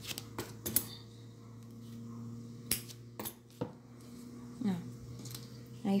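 Light handling sounds with several sharp little clicks as a thread end is worked through a crocheted string motif with a needle and pulled tight to finish it off.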